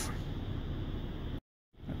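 Steady background hiss of room noise, broken about one and a half seconds in by a moment of dead silence where the recording is cut.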